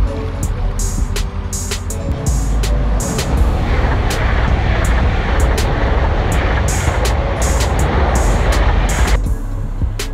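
Background music with a steady beat. From about three and a half seconds in, a passenger train crossing a railway bridge is heard under the music as a dense running noise, which cuts off suddenly near the end.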